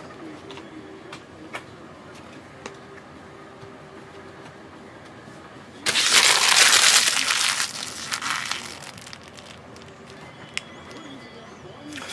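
Foil trading-card pack wrapper crinkling for about two seconds, starting about halfway through, as the cards are handled out of it. Before that there is only faint room tone with a few small clicks.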